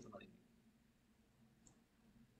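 Near silence, with a couple of faint clicks of a computer mouse as text is selected in an editor.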